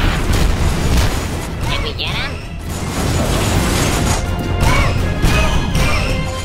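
Battle sound effects, with laser blaster shots and explosions sounding over a low rumble, set against background music.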